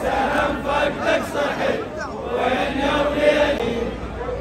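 A large crowd of men chanting a noha (Shia mourning lament) together, with many voices overlapping, and rhythmic chest-beating strikes a few per second in the first half.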